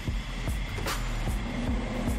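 Background music with a regular low beat over a steady low hum, with a few sharp clicks.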